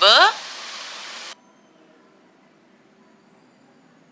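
A woman's voice says the letter 'b', followed by a steady hiss of recording noise that cuts off suddenly a little over a second in, leaving only faint background noise.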